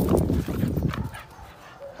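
A dog's short, rough vocal sounds for about the first second, then quiet.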